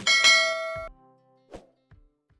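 Subscribe-animation sound effect: a bright bell chime rings out and fades within about a second, followed by a short click.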